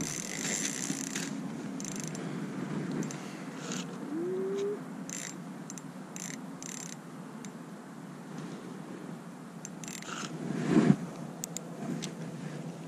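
Spinning reel on an ice-fishing rod clicking and whirring in short, irregular spurts as a fish is played on the line through the ice hole, with one short louder sound near the end.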